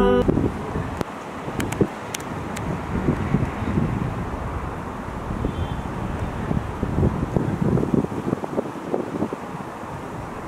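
Wind buffeting the microphone in uneven gusts, a low rumble over a steady outdoor hiss, with a few sharp ticks about two seconds in.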